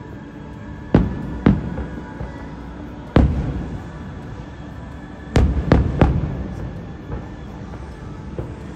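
Aerial fireworks shells bursting: six sharp bangs, a pair about a second in, a single one near the middle and a quick run of three a little past five seconds, each trailing off in a low rumble. Music plays steadily underneath.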